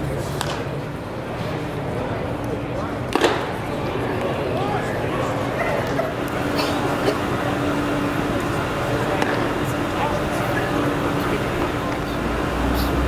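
Ballpark ambience at a baseball game: indistinct voices and chatter, with one sharp crack about three seconds in and a few fainter clicks later.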